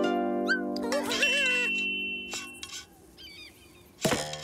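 Cartoon soundtrack: a held musical chord with quick rising whistle glides over it, and squeaky, wavering cartoon-character vocal sounds. The chord stops a little under three seconds in, and a faint squeaky chirp follows.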